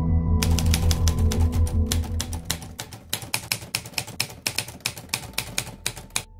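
Typing sound effect: rapid key clicks, about six a second, starting about half a second in. Underneath is ambient music with a pulsing low bass that fades down about two seconds in.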